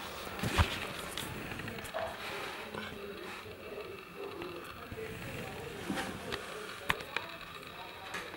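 Faint, indistinct voices in a room, with a soft thump about half a second in and a sharp click near the end.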